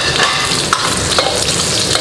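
Fatty pork belly sizzling in a hot iron wok as its fat renders out into lard, with a steel ladle stirring and scraping against the wok. A few sharp clicks of the ladle on the metal sound over the steady sizzle.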